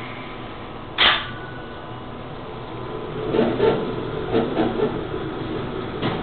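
Schindler machine-room-less passenger elevator: a loud knock about a second in, typical of the car doors shutting, then the car runs downward with a faint steady hum and uneven rumbling about halfway through.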